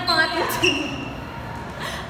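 Young people's voices talking briefly, with a sharp click about half a second in and a short high squeak just after it.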